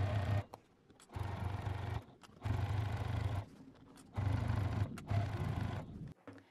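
Juki TL2000Qi straight-stitch sewing machine stitching a seam through thick quilted layers in five short runs of about a second each, stopping and restarting between them.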